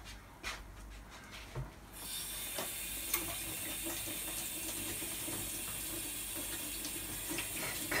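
A steady hiss that starts suddenly about two seconds in and keeps going evenly.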